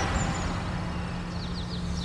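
A few faint, quick bird chirps about halfway through, over a low steady hum of outdoor ambience.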